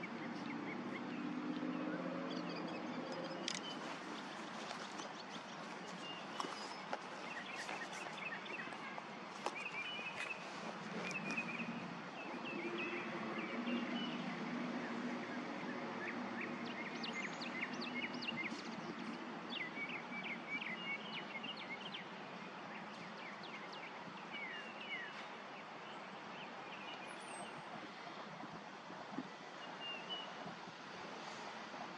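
Outdoor ambience: a steady background rush with birds chirping and calling on and off throughout. A low hum swells near the start and again about halfway through.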